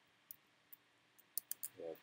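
Light computer keyboard key clicks, a few scattered, then three in quick succession near the end. A voice starts speaking just at the end.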